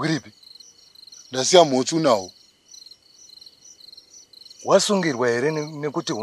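Crickets chirping steadily, about four chirps a second, with a second thin, steady insect trill beneath. Two short lines of speech sound over them, about a second and a half in and again near the end.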